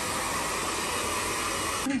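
A small electric blower motor running with a steady whirring hiss and a faint whine, cutting off suddenly near the end.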